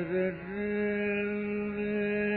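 A voice chanting in devotional style: a few short wavering notes, then one long steady held note from about half a second in.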